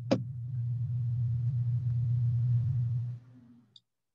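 A steady low hum, with a sharp click just after it starts; it stops about three seconds in, and a brief higher tone follows.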